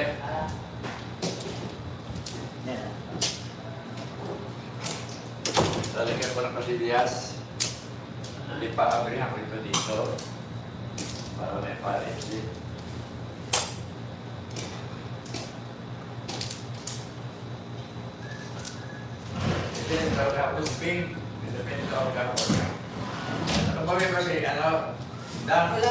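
Mahjong tiles clicking and clacking irregularly as players draw and discard them on the table, with a few sharp louder clacks. Voices murmur in between.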